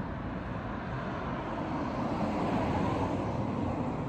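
Street traffic noise with a vehicle passing on the road alongside, swelling to its loudest about two to three seconds in and then fading.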